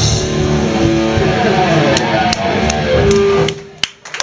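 Hardcore punk band playing live with electric guitar: the full band sound thins out just after the start, leaving guitar notes ringing and a few sharp clicks. A held note dies away and the sound drops off about three and a half seconds in.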